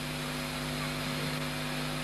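Steady electrical mains hum with hiss, several low level tones held without change.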